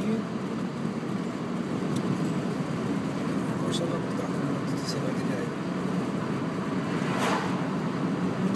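Steady road and engine noise heard inside the cabin of a moving car, with a couple of faint clicks.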